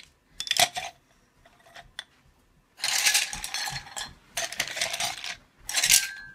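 Wooden colored pencils dropped in handfuls into a ceramic mug, clattering and rattling against its sides and each other: a short clatter near the start, then a longer one from about three seconds in, with more near the end.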